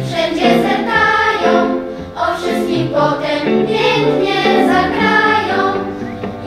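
A children's school choir singing, with a short break between phrases about two seconds in.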